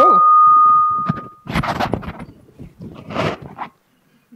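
Microphone feedback: a loud, steady high-pitched squeal from the lapel mic and sound system that cuts off suddenly about one and a half seconds in. Two short bursts of noise follow.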